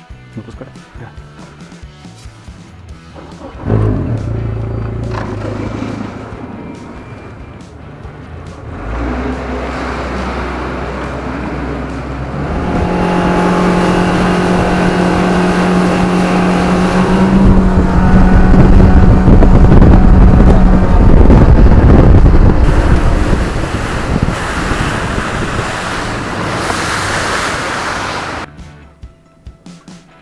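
Boat's outboard motor running under way, getting louder in steps as the boat gathers speed, with heavy rushing wind and water noise at speed. It cuts off abruptly near the end.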